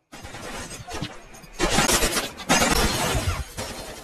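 Film gunfight sound effects: a dense run of rapid cracks and shattering impacts from a night firefight around a truck. It is quieter at first and grows loud from about a second and a half in, with a brief dip before a second loud burst.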